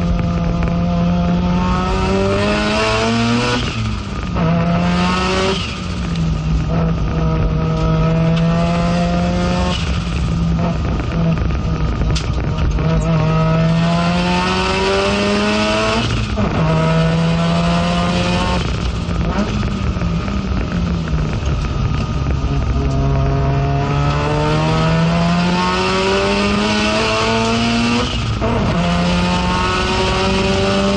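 FD3S Mazda RX-7 race car's engine heard from inside the stripped cockpit under hard acceleration. Its pitch climbs through each gear and drops sharply at each of several gear changes.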